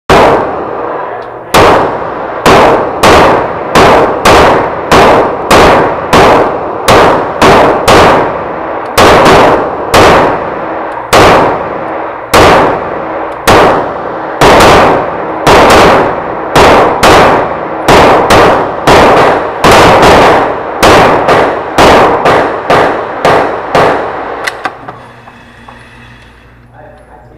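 Canik TP9SF 9mm pistol firing a long string of shots at about two a second, with a few short pauses and quicker spacing near the end. Each shot echoes off the walls of an indoor range.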